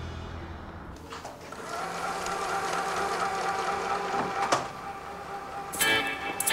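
Electric sewing machine running steadily with a constant motor whine, starting about a second in, with one sharp click partway through.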